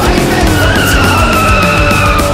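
Car tyres squealing for about a second and a half, over loud rock music.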